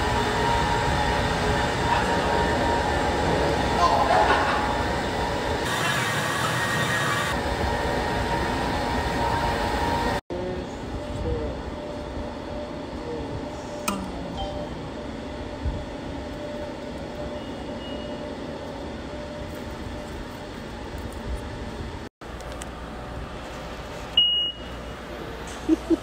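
Subway station ambience: a loud, steady echoing din at first, then a quieter din after a cut about ten seconds in. Near the end a fare gate gives a short high beep.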